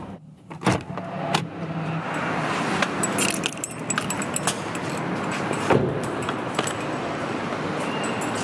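Steady city traffic noise, with a jangle of keys and scattered clicks about three to four seconds in.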